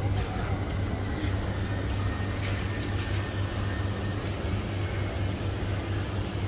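Steady city street noise with a low, even mechanical hum.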